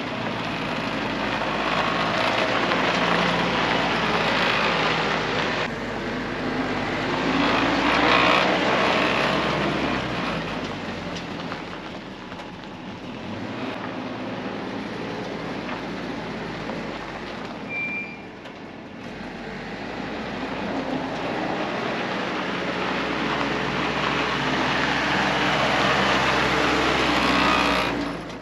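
Willys CJ-2A Jeep's four-cylinder Go-Devil flathead engine running as the Jeep drives off and comes back. It is louder near the start and the end and fades in the middle.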